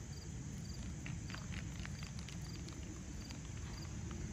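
Outdoor field ambience: an insect chirping at a steady rate, a little under two short high chirps a second, over a low rumble. A scatter of faint clicks comes between about one and three seconds in.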